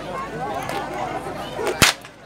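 A single sharp, loud crack of a performer's whip (pecut) near the end, over steady crowd chatter.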